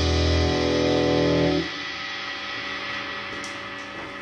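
Final chord of a blues-rock backing track on distorted electric guitar, held after the last hit and then cut off about one and a half seconds in, leaving a faint ring that fades away.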